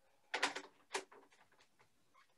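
A small keyboard being picked up and handled: three faint, short knocks and clatters in the first second.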